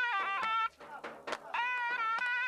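Zurna playing a melody in a bright, nasal tone, sliding between notes. The line breaks off about two-thirds of a second in and comes back after a gap of nearly a second.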